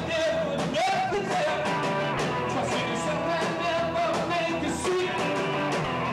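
Rock band playing live: electric bass, drums, keyboards and electric guitar, with a man singing.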